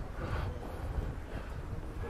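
Low, steady rumble of outdoor street background noise, with no single event standing out.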